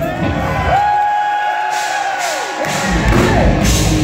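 Live hard-rock band: the drums and bass drop out for a couple of seconds, leaving a sustained high note that bends up and down in pitch. The full band crashes back in about two and a half seconds in.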